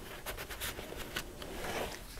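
Faint rustling and light irregular clicks of paper and cardstock being handled as a pull-out card is slid back into a page and the pages are laid flat.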